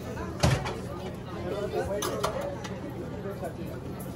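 Indistinct chatter of other people in a busy breakfast room, with a single sharp knock about half a second in.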